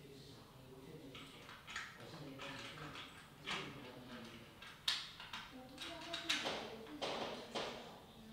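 Small plastic servo parts being handled and fitted together on a workbench, with several sharp clicks and rattles, loudest in the second half. A faint, indistinct voice runs underneath.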